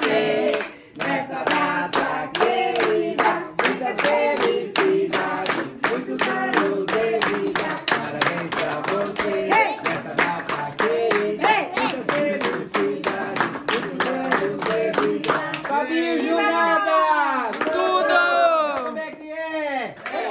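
A group of people singing together while clapping in a steady rhythm, about three claps a second. Near the end the clapping stops and voices call out in swooping, rising and falling pitches.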